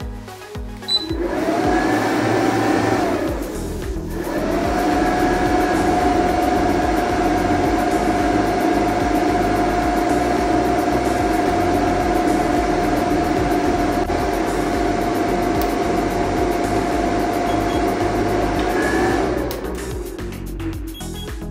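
Cooling fan of a 2000 W pure sine wave inverter running under heavy load, a steady whirring hum with a whine. It spins up about a second in, stops briefly a few seconds later, then runs evenly until it winds down and cuts off near the end.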